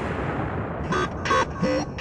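Logo sting sound effect: a steady rushing noise, then about a second in a quick run of four short pitched blips.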